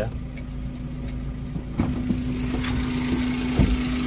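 Suzuki Carry Futura's 1.5 fuel-injected four-cylinder engine idling steadily, coming up louder about halfway through. Its running is smooth, as the seller presents it. Two sharp knocks sound over it, one about halfway and one near the end.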